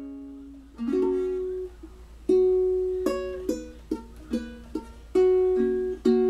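Solo ukulele playing without singing: single chords plucked and left to ring out, with a run of quicker chords in the middle.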